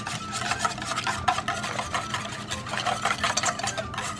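Wire balloon whisk beating a thin liquid batter in a stainless steel bowl: rapid, continuous clicking and scraping of the wires against the metal, with the liquid sloshing.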